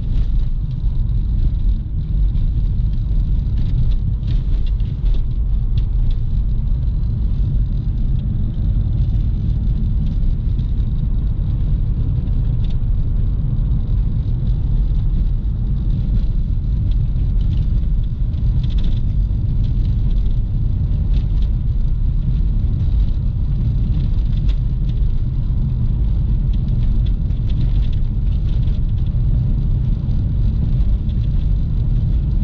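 Steady low rumble of a 2012 Nissan Juke 1.6-litre four-cylinder hatchback driving along the road, heard from inside the cabin: road and tyre noise mixed with the engine running, with a few faint ticks.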